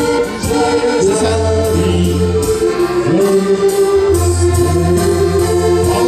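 Live accordion band, several accordions playing sustained chords together with electric guitar and long held low bass notes, with voices singing over the music.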